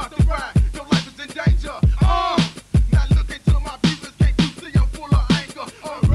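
Memphis rap played from a cassette tape: rapping over a fast pattern of deep kick drums that drop in pitch.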